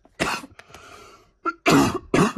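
A woman coughing: one cough shortly after the start, a breath drawn in, then a couple more coughs in quick succession near the end.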